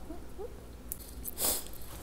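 Two faint short rising vocal hums, then a brief burst of rustling about one and a half seconds in, over a steady low hum.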